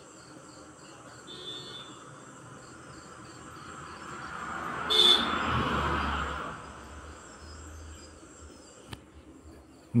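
Insects chirping in a steady, regular pulse in the background. About four seconds in, a louder rushing noise swells up, peaks with a brief sharp sound about a second later, and fades away over the next two seconds.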